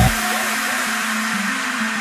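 Melbourne bounce electronic dance track at a breakdown: the kick and bass cut out and a steady white-noise wash holds over a quiet sustained synth note that steps up in pitch about a second and a half in.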